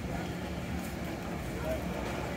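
Busy outdoor market background: a steady low hum under faint, distant chatter of people.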